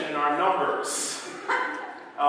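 A man's voice in drawn-out phrases, with short pauses between them.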